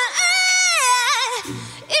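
Background song: a high-pitched sung vocal holds a long note, then slides down with a wavering pitch about a second in, and a lower, quieter vocal phrase follows near the end.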